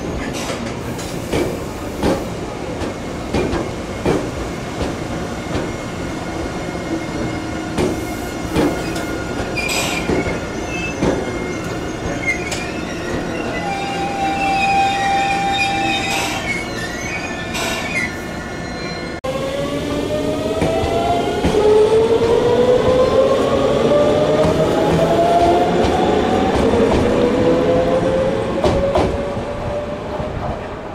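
Tobu 100 series Spacia electric train moving past with clicking wheels and brief high wheel squeals. About two-thirds of the way through, a rising electric whine in several tones sets in as the train accelerates away, then fades near the end.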